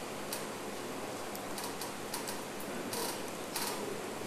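Laptop keyboard being typed on: about a dozen irregular key clicks, thickest in the second half, over steady hiss.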